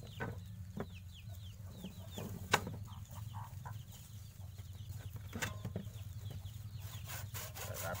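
Chickens clucking faintly in the background, with a single sharp knock about two and a half seconds in. Near the end a hand saw starts cutting through a cassava stem in quick, even strokes.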